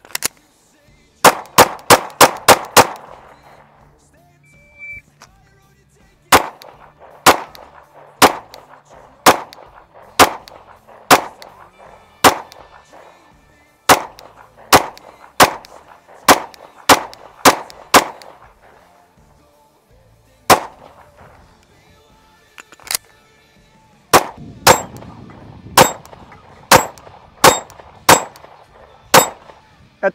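Shadow Systems MR920 9mm pistol firing in strings: a quick string of about six shots near the start, then shots roughly a second apart that speed up, and two more fast strings near the end.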